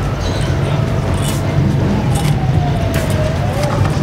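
Steady low rumble of wind buffeting the microphone, with a faint tone that slowly falls in pitch and then rises near the end, and a few sharp clicks.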